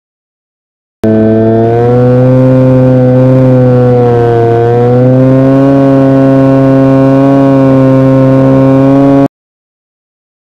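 Drone motors and propellers buzzing loudly at a steady pitch, dipping briefly and rising again about halfway through. The sound starts and cuts off abruptly.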